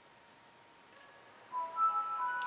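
Near silence, then about one and a half seconds in the Windows 7 startup sound begins on the laptop's speakers: a short chime of several sustained tones, played as the desktop loads.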